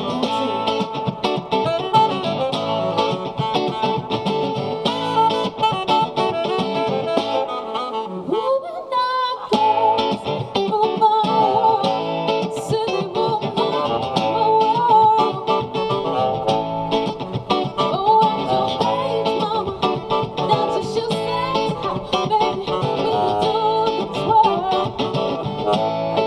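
Live band music with a woman singing into a microphone. The band briefly drops out about a third of the way through, then comes back in.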